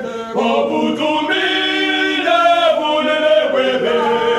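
Soundtrack music: voices singing long held notes in a choir-like style.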